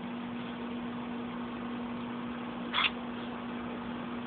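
A steady low mechanical hum at one pitch over an even hiss, with a brief higher rustle about three seconds in.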